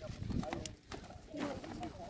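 Indistinct voices of a group of people talking in the background, with a brief click a little after half a second in.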